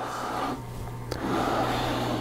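Plastic aquarium filter parts being handled and turned against the tank's plastic back panel: rubbing and scraping, with one sharp click about a second in and a louder stretch of rubbing after it.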